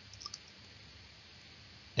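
A few faint, short clicks a fraction of a second in, over quiet room tone.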